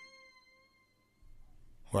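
A pause in the track: a faint held note fades out in the first half-second, leaving near silence with a faint low hum, and a voice exclaims 'What?' right at the end.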